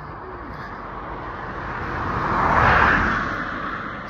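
A motor vehicle passing on the road close by, its tyre and engine noise swelling to its loudest about three quarters of the way through and then fading as it goes by.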